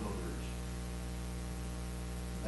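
Steady electrical mains hum with a layer of hiss in the recording's audio.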